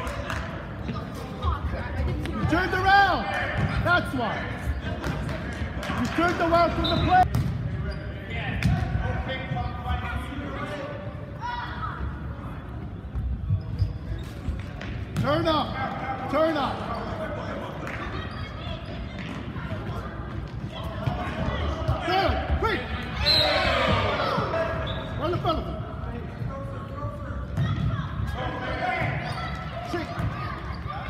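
A futsal ball being kicked and bouncing on a hard gym floor in sharp knocks, amid scattered shouting voices of players and spectators in a large, echoing gymnasium.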